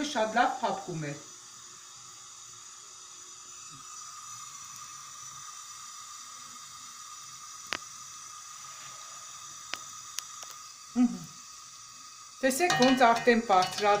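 Yeast dough (bishi) deep-frying in oil in a pan: a steady, quiet sizzle, with a few sharp ticks from the oil between about 8 and 10 seconds in.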